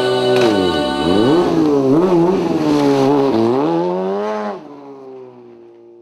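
Sportbike engine revving during stunt riding, its pitch falling and rising several times. The engine sound cuts off about four and a half seconds in, leaving music that fades out.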